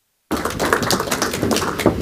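Audience applause, a dense patter of many hand claps that cuts in suddenly after a moment of silence.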